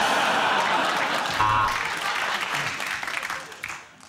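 Studio audience laughing and applauding, dying away near the end.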